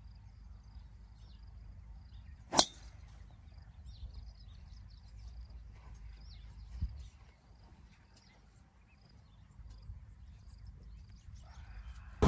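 A golf driver striking a teed ball: one sharp metallic crack about two and a half seconds in, with a brief ring after it. A much fainter knock follows near seven seconds.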